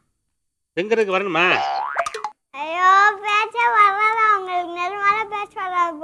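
A young girl's high voice speaking in a drawn-out, sing-song way. About a second and a half in, a brief rising glide like a comic 'boing' sound effect plays over it.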